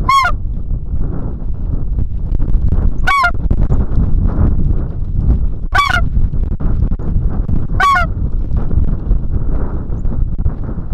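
Hand-held snow goose call blown in four short, high yelps, a few seconds apart, over steady wind rumble on the microphone.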